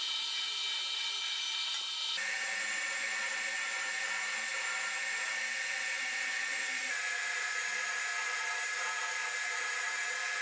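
Small benchtop metal lathe running, its motor and gearing giving a steady high whine made of several fixed tones, while a carbide tool cuts the end of a spinning metal tube. The whine shifts abruptly in pitch about two seconds in and again about seven seconds in.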